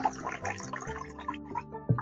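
Energy drink poured from a can into a glass, fizzing, fading out over the first second, over quiet background music. A brief knock comes near the end.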